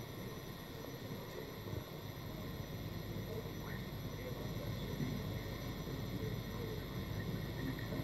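Quiet room tone: a low, even background noise with a faint steady electrical whine and a few soft ticks, and no distinct event.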